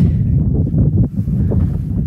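Wind buffeting the camera microphone: a loud, gusting low rumble.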